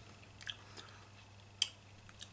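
A few soft mouth clicks and lip smacks from a man tasting a sour beer, with a sharper click about one and a half seconds in, over faint room tone.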